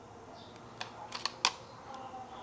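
A handful of sharp plastic clicks and taps as a small power-cord connector is handled and pushed into the socket on the end of the plastic fly-swatter housing, the loudest click about one and a half seconds in.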